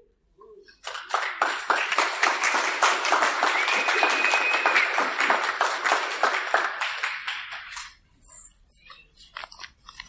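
Audience applauding, starting about a second in and dying away to a few scattered claps near the end.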